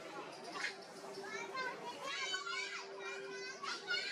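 Several high-pitched voices chattering and squealing in quick rising and falling calls, thickest about two seconds in, over a steady low hum.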